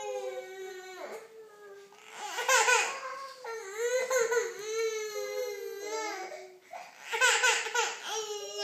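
Infant crying in long, high, wavering wails, with a brief let-up about a second in and another shortly before the end.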